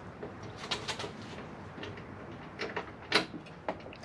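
A few scattered light clicks and taps from hand-fitting a bolt and washer into a transmission cooler's lower mounting bracket.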